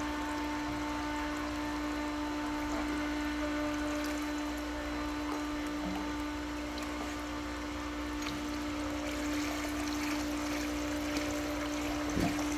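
Electric pump motor running with a steady hum, while water pours and trickles through the return line as the freshly primed pump starts to move water. The water sound grows stronger near the end.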